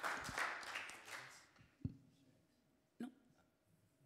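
Audience applause dying away over the first second and a half, then a short thump a little under two seconds in and a click about a second later.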